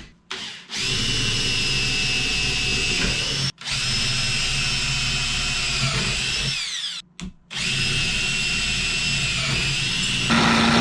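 Cordless drill boring into aluminum angle, a steady high whine in three runs with short stops about three and a half and seven seconds in; the pitch drops as the drill slows just before the second stop.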